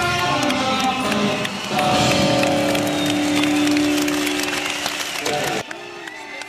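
Rock band playing live: vocals and guitars, then a long held chord from about two seconds in that cuts off suddenly shortly before the end, leaving a much quieter sound.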